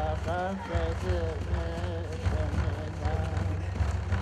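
Innu frame drum beaten in a steady, fast, continuous pulse, with a voice singing a chant over it.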